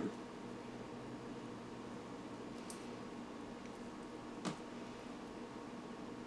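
Quiet, soft scraping and squishing of thick almond butter as a silicone spatula pushes it out of a blender pitcher into a glass jar, over a steady low hum. One short tap about four and a half seconds in, and a fainter tick a couple of seconds before it.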